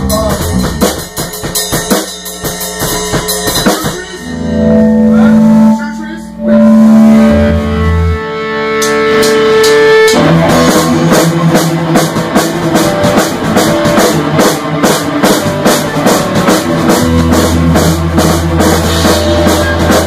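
Punk rock band playing live in a garage rehearsal: drum kit, distorted electric guitars and bass. About four seconds in, the drums mostly drop out while guitar and bass ring out held notes. About ten seconds in, the full band comes back in with fast, driving drums and cymbals.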